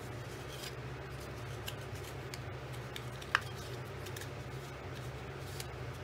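Cardstock being handled: faint rustling and creasing of a folded paper piece as it is bent and pushed into a slot, with one sharp tick about halfway through, over a steady low hum.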